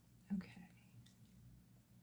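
A softly spoken "okay" about half a second in, then near silence: faint room tone with a low steady hum.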